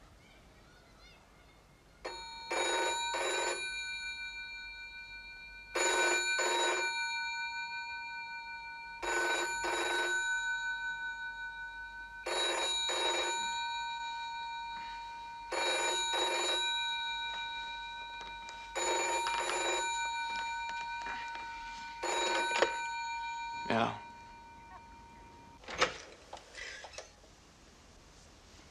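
Telephone bell ringing in the British double-ring pattern: seven pairs of rings, about three and a half seconds apart. The ringing stops after a sharp clunk near the end, and a click follows shortly after.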